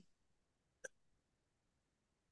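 Near silence, broken by a single very short click a little under a second in.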